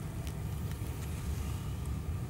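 Low, steady background rumble with a faint hiss.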